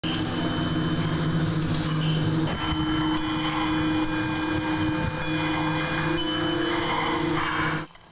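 Metal sound sculptures: a steady low hum of several held tones, with bell-like metallic strikes about four times in the second half, each ringing out with high shimmering overtones, like a music box.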